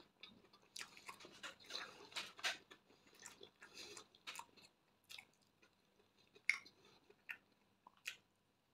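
A person chewing soft white bread, close-miked: quiet wet mouth clicks and smacks, frequent in the first half and sparser later, with one sharper click about six and a half seconds in.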